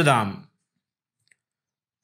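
A voice finishing a spoken word in the first half-second, then silence broken only by one faint click.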